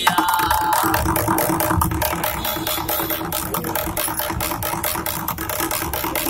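An upturned plastic ghee container played as a drum with a stick, struck in quick, steady strokes. A man's voice holds long, drawn-out notes over the beat.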